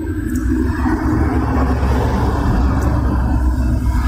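A loud, steady low rumble with a noisy hum above it.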